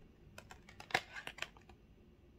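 Light, quick clicks and taps of long fingernails and stiff card stock as an oracle card is handled and turned over, about a dozen irregular ticks with the loudest about a second in.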